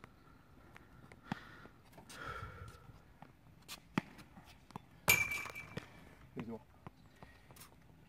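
A few sharp knocks of a ball being struck during a rushball rally, the loudest about five seconds in with a brief ringing after it.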